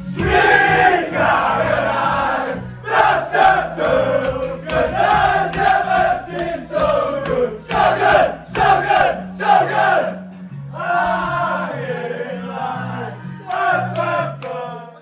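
A group of men singing and chanting together in celebration in a crowded changing room, with music playing underneath on a steady stepping bass line. The singing breaks off briefly about ten seconds in, then picks up again.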